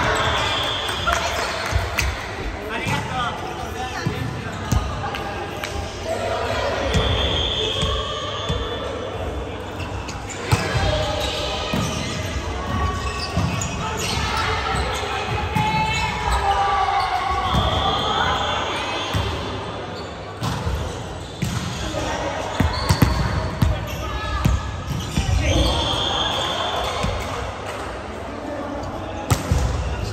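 Volleyball being played in a large, echoing gym: the ball is struck and thumps on the wooden floor again and again, while players call out to each other.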